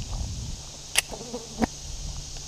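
Footsteps and rustle while walking along a grassy dirt track, with a low rumble on the camera microphone and two sharp clicks, about a second in and again just past halfway.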